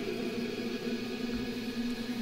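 Soft background music made of steady, held tones like a sustained ambient drone.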